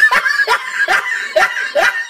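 A person laughing in short, high-pitched bursts that repeat about twice a second.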